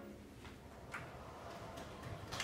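The last held chord of a button accordion dies away at the very start, leaving a quiet hall with a few faint clicks, about half a second and a second in.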